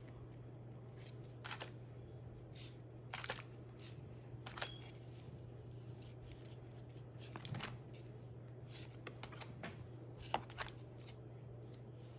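Small paper photo prints being flicked and shuffled through by hand: scattered brief rustles and soft clicks of card on card, over a steady low hum.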